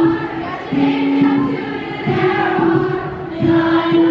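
A woman singing live into a microphone with ukulele accompaniment, amplified through the hall's speakers. She holds a slow phrase of notes, each lasting about half a second to a second.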